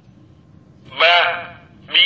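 A Readboy talking pen's small speaker voicing a recorded Arabic letter syllable as the pen touches the page: one short syllable about a second in, its pitch rising then falling, and the next one starting right at the end.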